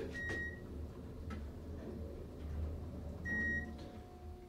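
Elevator floor-passing beep, a short high electronic tone sounding twice about three seconds apart as the car passes floors going up. Under it runs the low, steady hum of the AC geared traction elevator car in travel.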